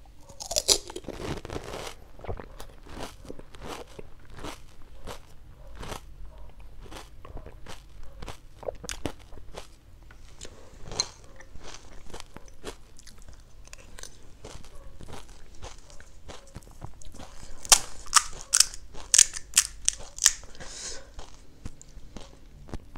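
Close-up eating sounds of panipuri (golgappa). A loud crunch comes as the crisp puri shell is bitten, about half a second in. Rhythmic wet chewing clicks follow, a few a second, and a run of louder, sharper crisp cracks comes near the end.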